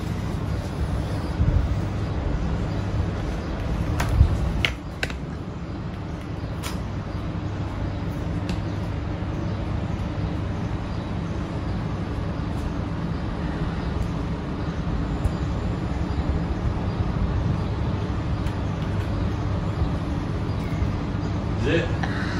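Steady low background hum and rumble, with a few light taps or clicks between about four and seven seconds in.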